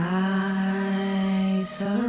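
A voice chanting a mantra in long held notes: one steady note, a short breath near the end, then a second held note a little higher. A fainter steady ringing tone sounds beneath it.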